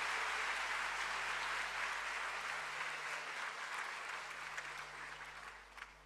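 Audience applauding steadily, slowly dying away toward the end.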